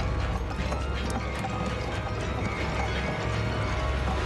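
Horror film soundtrack: a steady low drone under many irregular mechanical clicks.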